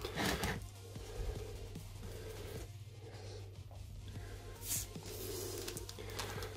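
Quiet room with a steady low hum, and brief rustles of baking paper being handled near the start and again about five seconds in.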